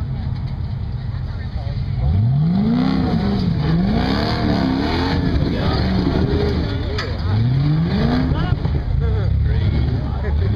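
Red rock-crawling competition buggy's engine, first running steadily, then revving hard about two seconds in. The revs waver up and down as it claws up a rocky climb and rise again near the end.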